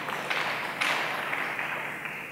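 An audience applauding briefly, a steady patter of many hands clapping that picks up a little under a second in and thins out toward the end.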